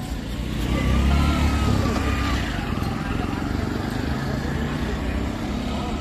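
Vehicle engine running close by, over a steady low traffic rumble, swelling louder about a second in.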